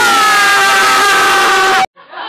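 A loud, sustained pitched sound, a single tone with its overtones and a harsh, noisy edge, sliding slowly down in pitch and cutting off abruptly near the end.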